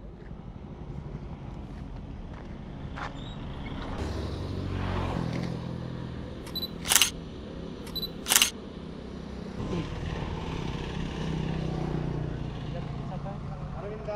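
Sony A7 III camera shutter fired twice, about a second and a half apart, each loud click coming just after a short high beep. Under it is steady outdoor road noise, with a low rumble of a passing vehicle a few seconds in.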